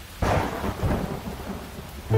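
Thunder-and-rain sound effect: a sudden loud crack of thunder about a quarter second in, rumbling and fading over a steady hiss of rain.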